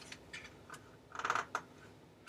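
Paper pages of a children's picture book being handled and turned: a few light clicks and taps, with a short papery rustle about a second in.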